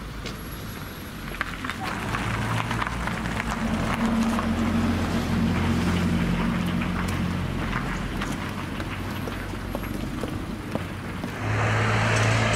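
A car engine running close by, a steady low hum that grows louder a couple of seconds in and eases off near the end, over street noise with scattered small knocks.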